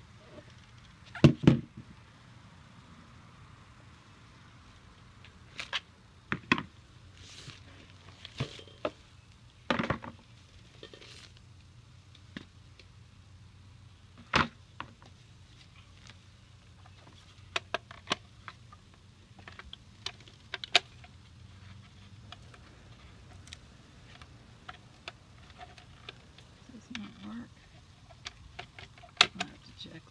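Rummaging by hand through a garbage bag of fabric and household items: soft rustling with scattered sharp knocks and clicks as objects are moved and set down. The loudest knocks come about a second in, near ten and fourteen seconds, and near the end.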